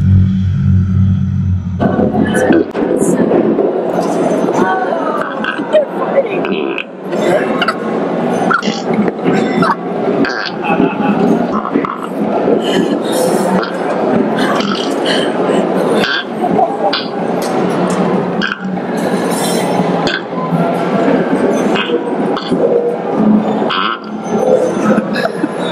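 An old coin-operated animated cowboy campfire diorama playing its recorded soundtrack of voices and music, opening with a low steady hum for about two seconds. People laugh about halfway through.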